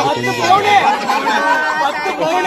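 People talking and chattering, with voices overlapping.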